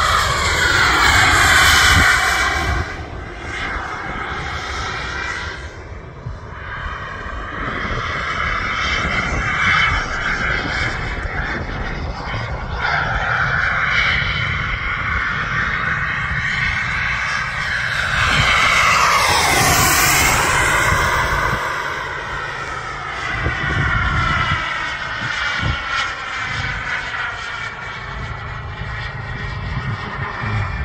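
Model F-15 Eagle jet's engine whining as it flies overhead, the pitch rising and falling as it circles. It is loudest in a close pass near the two-thirds mark, where the whine sweeps sharply down in pitch as the jet goes by.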